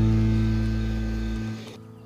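A song's closing chord, strummed on acoustic guitar, ringing out and slowly fading. A low bass note stops about one and a half seconds in.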